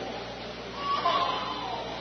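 A pause in a man's speech, filled with the steady hiss and room noise of an old recording, with a faint short sound about a second in.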